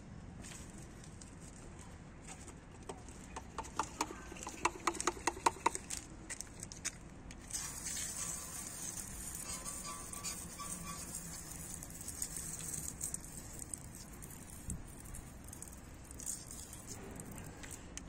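Water spattering onto a car's alloy wheel to rinse off the degreaser, an even hissing patter lasting about eight seconds from about seven seconds in. A quick run of clicks comes a few seconds before it.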